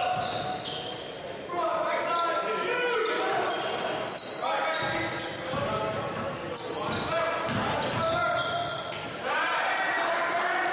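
Basketball game sounds in a gymnasium: a steady mix of spectators' and players' voices and shouts echoing in the hall, with a ball being dribbled on the hardwood court.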